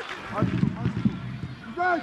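Football stadium ambience: a low, uneven crowd-and-pitch murmur with scattered small noises, and a short snatch of commentator's voice near the end.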